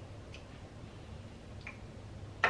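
Faint keystrokes on an old beige computer keyboard: two light clicks more than a second apart, over a low steady hum.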